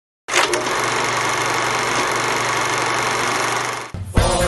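A steady mechanical whirring clatter, starting suddenly just after the beginning and holding even until it stops just before the end.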